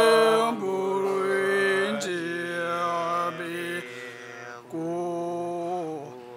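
Male Tibetan Buddhist monks chanting an auspicious opening prayer together, in a deep voice on long held notes. The notes come in several phrases with short pauses for breath.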